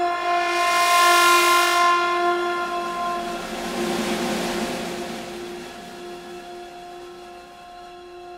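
Symphony orchestra holding a loud chord of several sustained tones, the kind a blaring train horn resembles, with a wash of percussion noise swelling over it in the first couple of seconds and again around four seconds, then dying down to a quieter held chord.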